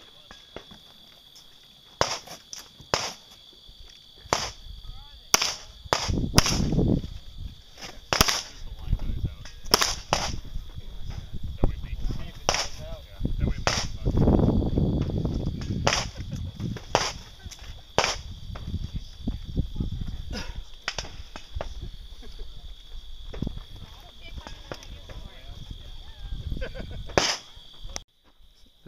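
Handgun shots fired in irregular strings of sharp cracks, some in quick pairs, through the whole stretch. A steady high insect drone runs underneath, and low wind rumble on the microphone swells around the middle.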